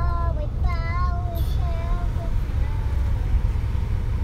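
A young child singing a few long, wavering notes that trail off a little past the middle, over the steady low rumble of a moving car's cabin.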